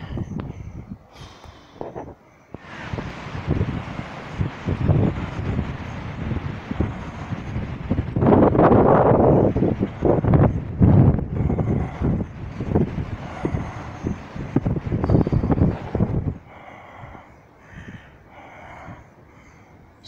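Rough rumbling wind and handling noise on a phone's microphone while walking. It rises a few seconds in, is loudest in the middle, and drops away sharply near the end.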